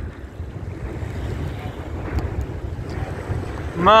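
Wind buffeting the microphone, a low uneven rumble, over small waves lapping in shallow, choppy seawater, with a few faint ticks about halfway through.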